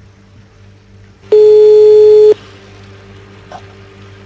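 Telephone ringback tone heard over the line while a call is placed: one loud, steady tone about a second long, a little over a second in, over a faint low hum. The phone at the other end is ringing and has not yet been answered.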